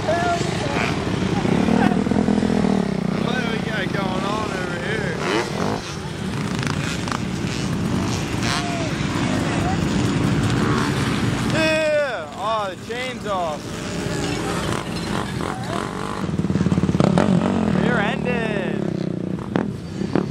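Sport quad (ATV) engines running on a dirt track, with people shouting and whooping a few times over the engine noise.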